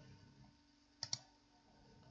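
Two quick, sharp clicks about a second in, from computer controls being operated during the data entry, with near silence around them.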